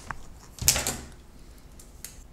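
Handling noise: a sharp click, then a louder clunk with a short scrape a little over half a second in, as the camera is moved and repositioned over a cluttered workbench.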